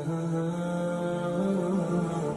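A single voice chanting unaccompanied in long held notes that glide slowly up and down, heard as background vocal music.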